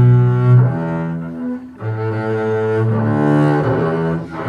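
Double bass played with the bow (arco): slow, sustained low notes, about four of them, with a brief break a little under two seconds in.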